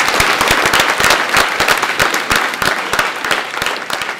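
Audience applauding: many people clapping together in a loud, dense patter that starts to taper off near the end.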